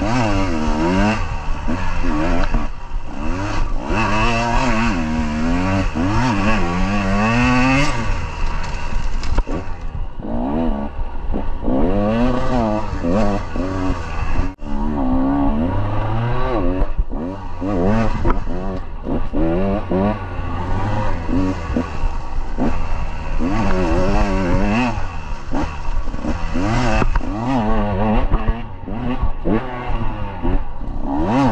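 KTM 150 two-stroke dirt bike engine revving up and down over and over as it is ridden, its pitch rising and falling with each throttle change. There is a brief drop about halfway through.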